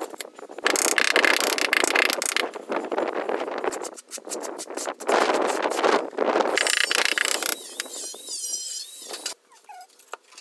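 Gritty scraping strokes of floor tiling, a steel trowel and porcelain tile working cement tile adhesive on concrete, in three loud bursts of a second or two each. A fainter high wavering squeal follows near the end.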